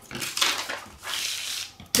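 Sheets of craft vinyl and paper backing rustling as they are handled and slid across a cutting mat, with a few light clicks.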